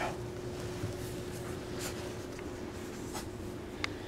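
Soft scratchy rustling as a hand strokes a puppy and the puppies shift on blanket bedding, with a few faint clicks and a sharper click near the end, over a steady low hum.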